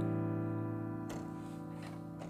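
An A minor 11 chord (A, E, G, B, D) held on a piano keyboard, ringing on and slowly dying away.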